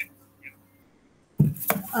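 A few faint clicks, then a short stretch of near silence, then a sudden burst of sound about a second and a half in as a conference-call microphone comes on and a woman starts to speak with a hesitant 'uh'.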